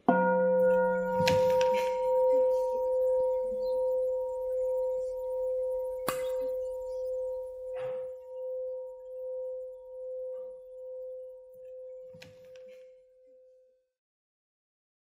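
A Buddhist bowl bell struck once, ringing at one steady pitch with its loudness pulsing slowly as it fades out over about thirteen seconds.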